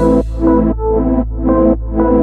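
Electronic dance music: pulsing synthesizer chords, about two a second, over a steady deep bass.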